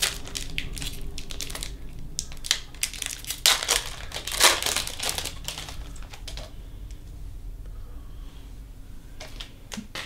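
Foil trading-card pack wrapper being torn open and crinkled by hand, a run of sharp crackles that is loudest around the middle. It goes quiet after about six and a half seconds, when the cards are out of the wrapper.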